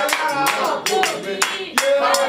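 Singing voice with rhythmic hand clapping, about two claps a second.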